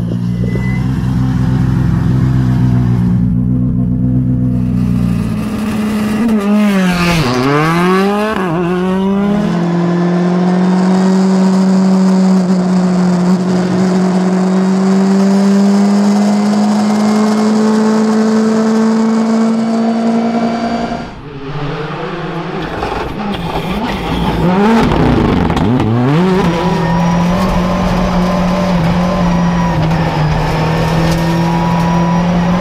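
Rally car engine heard from on board, revving up and down in quick gear changes, then pulling steadily for about ten seconds with its pitch creeping slowly upward. After a brief drop near two-thirds through, it goes into another run of quick up-and-down revving.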